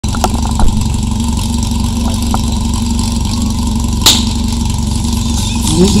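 Portable fire-pump engine running at a steady idle, with a sharp crack about four seconds in. Voices start shouting near the end.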